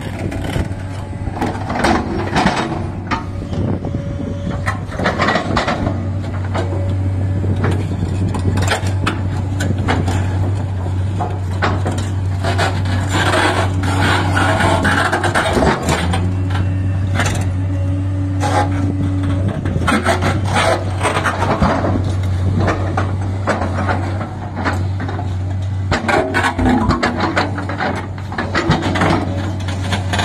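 JCB 380 tracked excavator's diesel engine running steadily under load, a constant low drone, while its steel bucket pushes and scrapes a marble block over sandy ground with repeated scrapes and knocks of stone and metal.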